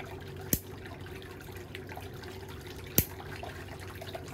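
Two sharp clicks of toenail nippers snipping at a thick fungal toenail, about half a second in and again about three seconds in, over a steady low hum.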